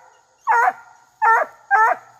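Redbone coonhound puppy barking treed, looking up the trunk at its quarry: three short, high-pitched barks in quick succession.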